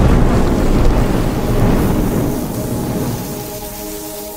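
A deep rumbling whoosh of an intro sound effect, swelling in at once and slowly fading over about three seconds, with sustained music tones coming back in near the end.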